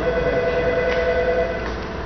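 A telephone ringing: a steady electronic ring of several held tones that stops shortly before the end.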